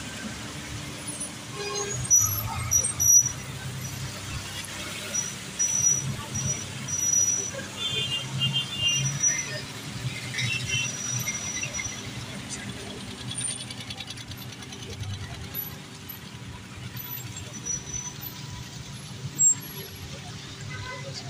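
Slow road traffic: motorcycle and car engines running close by in a steady low hum, with a few short, thin, high squeals and voices in the background.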